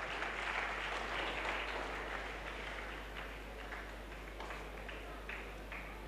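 Congregation applauding: a steady clatter of many hands clapping that eases off a little in the second half.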